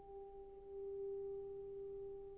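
A single piano note left ringing after being struck, thin and nearly pure in tone, with a slow waver in loudness.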